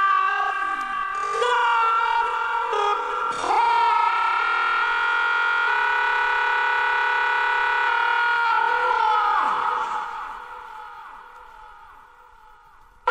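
Sustained electronic synthesizer chord with no beat, a breakdown in a house/techno mix. The chord dips and sweeps in pitch a couple of times and fades out over the last few seconds.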